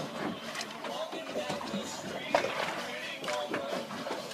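Faint talking in the background over a steady hiss of open-air noise, with no clear mechanical or fishing-tackle sound standing out.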